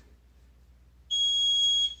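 A single steady, high-pitched electronic beep from a gym interval timer, starting about halfway through and lasting just under a second before cutting off sharply: the signal marking the end of a 30-second work interval.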